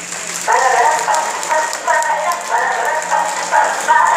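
Theatre audience applauding and cheering, a dense clatter of many hands and voices that starts about half a second in.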